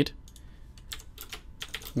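Typing on a computer keyboard: a short run of keystrokes in the second half.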